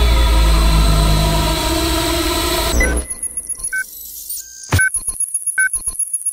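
Cinematic intro soundtrack: a loud, dense wash of sound over a deep low drone for about three seconds, which cuts off abruptly into sparse electronic glitch sounds of short beeps and clicks.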